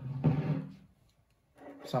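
A man's voice: a drawn-out, held hesitation sound trailing off his last words, a short pause, then his speech resuming near the end.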